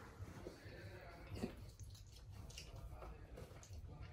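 Faint chewing and mouth sounds of someone eating a chicken wing, a few soft irregular smacks over quiet room tone.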